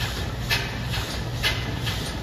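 Belt-driven lathe and overhead line shaft running: a steady low hum with a sharp tick about once a second.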